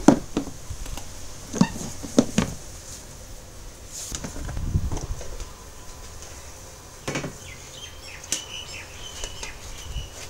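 Plastic lid of a picnic-cooler mash tun being put on with a sharp knock, then a few more knocks and clicks of handling.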